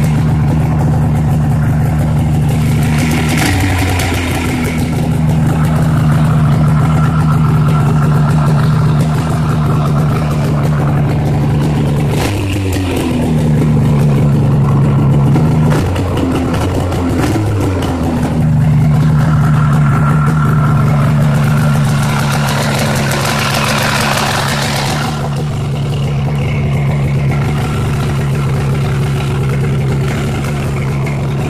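1988 Yamaha Phazer snowmobile's 485 cc two-stroke twin running steadily at idle just after starting. The engine note wavers briefly a few times, about 4 s, 12 s, and 16 to 18 s in.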